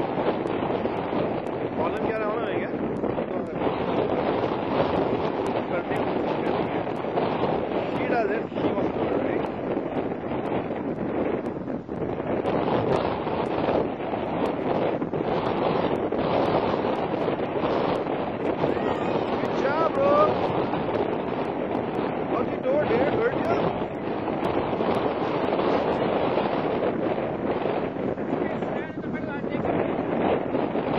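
Wind blowing across the microphone, a steady rushing noise throughout, with faint distant voices now and then.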